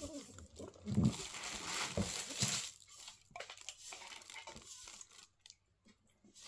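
Rustling and handling noise with a few soft knocks as an aluminium drinks can is turned over in the hands; it dies down to faint ticks about halfway through.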